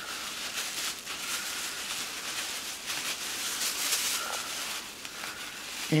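Plastic grocery-bag strips rustling and crinkling as they are pulled and fed by hand through a woven plastic-bag mat.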